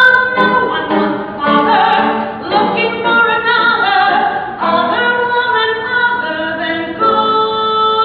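A woman singing a musical theatre song live, with several pitched parts sounding together beneath her voice. The notes are held and change every second or two.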